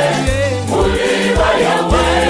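Mixed choir of men's and women's voices singing a gospel song in Bemba in harmony, over backing music with a bass line and a steady beat. A short break between sung phrases comes about half a second in.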